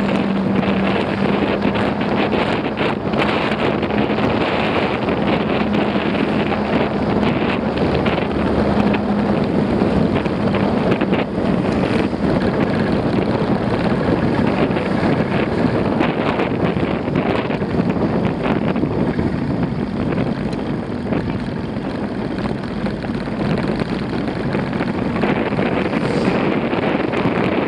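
Wind rushing over the microphone of a camera on a moving motorcycle, over the steady hum of its engine; the engine note is plainest in the first half and sinks under the wind later.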